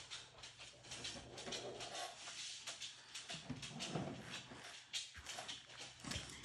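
Quiet room tone: a faint steady low hum with scattered small clicks and ticks, and a few weak soft sounds near the middle.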